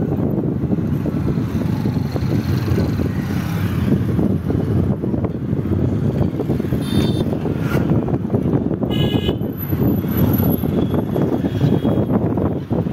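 Steady road-vehicle rumble, with a short horn toot about nine seconds in.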